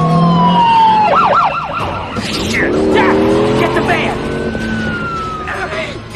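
Police siren wailing in long falling sweeps, switching briefly to a fast warbling yelp about a second in, over the sound of a passing car.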